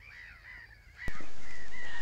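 Birds calling, a series of short arched calls, with a single sharp click about halfway through.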